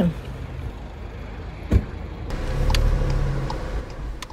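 A single sharp knock about two seconds in, then a Skoda car's engine starting and running, loudest a little before three seconds and easing off.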